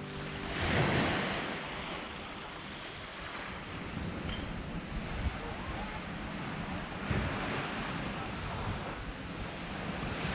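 Lake Michigan waves washing on a sandy shore, mixed with wind on the microphone; one wave swells about a second in, then the wash and wind go on steadily.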